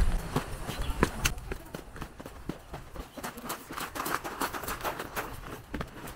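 Footsteps crunching on a loose gravel path in a steady walking rhythm.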